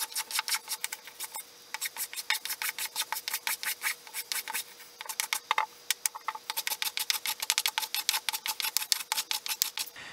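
Block plane taking quick, short strokes along the edges of a pine workpiece, about four strokes a second, with two brief pauses.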